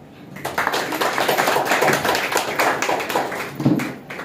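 Small audience clapping in a room, starting about half a second in and fading near the end, with a short low thud near the end.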